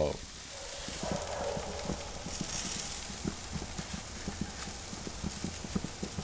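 Antelope backstrap steaks sizzling on a hot grill, a steady hiss broken by many small crackles and pops of spitting fat.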